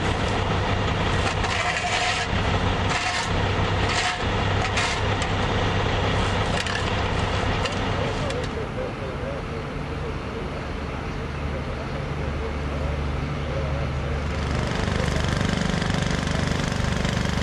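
Shovel and broom scraping loose gravel on asphalt in a series of short scrapes over the steady running of heavy equipment's engines. The scraping stops about halfway and the engine sound continues alone, a little louder near the end.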